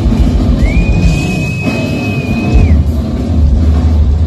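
A Yamaha drum kit played live in a loud band mix, with dense kick and tom hits underneath. A single high note glides up about half a second in, holds steady, and bends down again just before three seconds.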